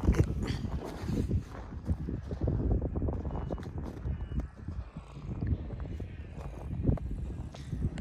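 Footsteps crunching on packed snow, with knocks from handling the phone, over an uneven low rumble of wind on the microphone.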